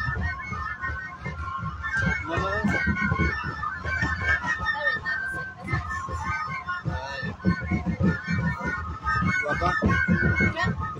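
Several flutes playing a melody together in a crowd, with people's voices mixed in.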